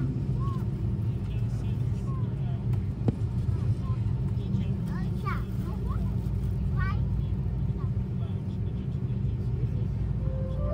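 Steady low rumble inside an airliner cabin as the jet rolls along the ground, from its engines and wheels, with a few faint voices over it.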